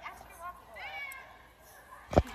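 Faint voices, with a short high squeal about a second in that rises and falls.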